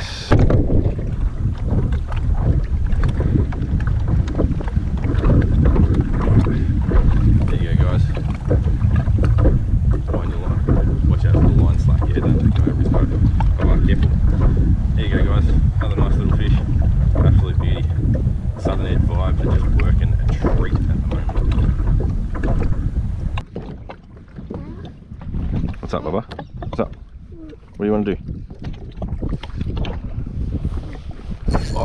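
Wind buffeting the microphone, a loud low rumble, with scattered small knocks from handling in the kayak. The wind noise drops away suddenly about two-thirds of the way through.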